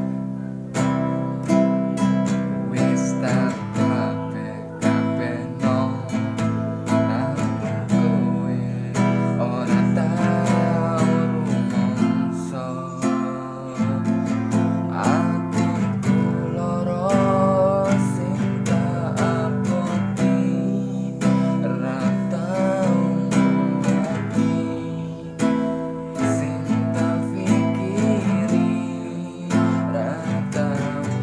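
Nylon-string classical guitar strummed steadily in a rhythmic pattern through the chord progression A minor, E minor, F, G.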